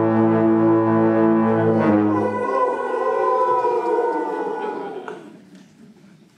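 Concert wind band holding a loud sustained brass chord; the low brass cuts off about two and a half seconds in, leaving higher instruments in a slowly falling glide that fades away near the end.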